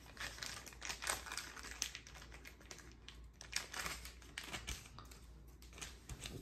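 Faint, irregular clicks and light rustling of clear plastic card sleeves being handled.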